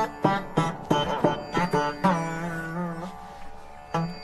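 Carnatic music on the Saraswati veena: a quick run of plucked notes with bending, sliding pitch, then about halfway through one long note held and gently bent as it fades away.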